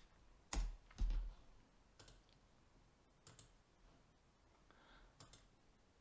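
Clicks from a computer mouse and keyboard. Two louder clicks about half a second apart come near the start, then a few faint, scattered clicks.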